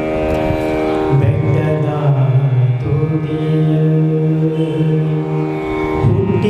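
A man singing a Kannada devotional song in a Carnatic style into a microphone, holding long, drawn-out notes that shift pitch every second or two.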